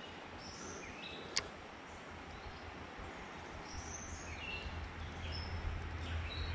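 Outdoor creek ambience: a steady background hiss with a few faint, short bird chirps and a single sharp click about a second and a half in. A low rumble builds toward the end.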